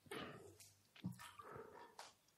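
Near silence, with two faint brief sounds: one right at the start and another about a second in.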